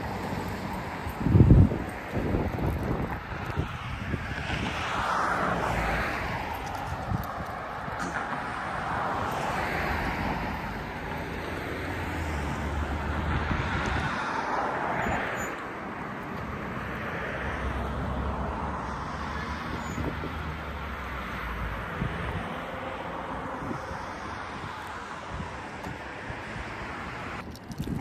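Outdoor ambience of road traffic noise with wind rumbling on the microphone, and a short low thump about a second and a half in.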